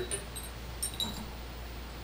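A few light clinks of glass in the first second, as a test tube is set down to stand in an Erlenmeyer flask, over a low steady room hum.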